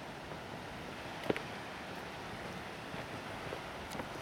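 Steady wash of sea surf and wind on an open coast, with a few footsteps on a gravel path; one step, about a third of the way in, is sharper than the rest.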